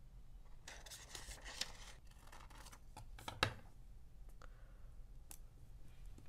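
Scissors cutting a sheet of thin patterned paper: a run of rasping snips about a second in, then light paper handling. A single sharp click a little past the middle is the loudest sound.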